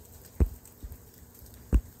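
Two sharp, short knocks about a second and a half apart, with a fainter one between them, on or against the phone that is recording, over a quiet background.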